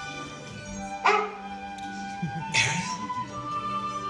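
Orchestral stage-show music with held chords playing through theatre speakers. Two short dog barks from the show's dog character cut through it, about one second and two and a half seconds in, the first the louder.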